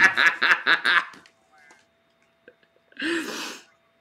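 A woman laughing hard in quick rhythmic bursts that die away about a second in, then one short loud breathy burst, a gasp of laughter, near the end.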